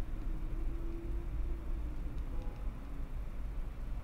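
Steady low hum under faint room noise, with a faint steady tone that fades out about a second in.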